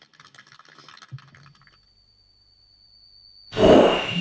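Faint scattered clapping that dies away after the talk's closing thanks, then near silence with a faint steady high tone. Near the end, a sudden loud whoosh sound effect starts the video's outro.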